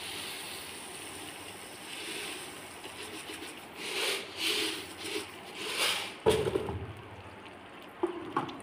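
Hot fat sizzling steadily in a metal pan as sugar is tipped in, with a few louder hissy swells around the middle. A sharp knock a little after six seconds is the loudest sound.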